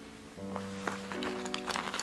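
Soft background music with held notes, picking up again about half a second in, with a few faint clicks over it.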